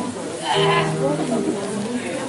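A person's voice in a hall, with one held, drawn-out pitched sound from about half a second in, louder than the chatter around it.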